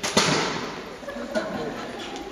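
A loud, sudden impact just after the start that rings out and dies away over about half a second in the hall's echo, followed by a shorter sharp knock about a second and a half in, with faint voices.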